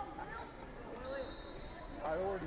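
Indistinct voices echoing in a large sports hall, with a dull thud or two. A faint high steady tone sounds from about halfway through until near the end.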